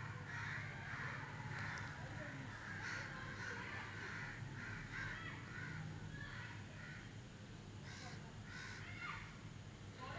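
Crows cawing over and over in the background, faint, over a low steady hum.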